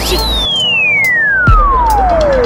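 A descending-whistle sound effect: a single pure tone that jumps high, then slides steadily down in pitch over about three and a half seconds. A deep bass boom hits about one and a half seconds in, over background music.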